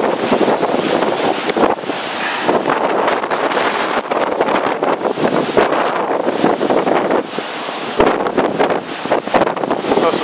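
Strong, gusting storm wind from Hurricane Sandy blowing across the microphone: a continuous loud rush that swells and eases from gust to gust. A single sharp knock is heard about eight seconds in.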